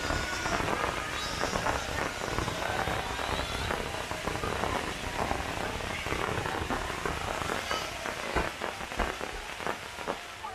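Fireworks crackling densely and continuously, a rain-like hiss of many tiny pops from crackling-star shells and fountains, with a couple of louder bangs near the end.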